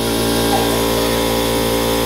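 A loud, steady machine hum made of several fixed tones, like a small motor running, unchanging throughout.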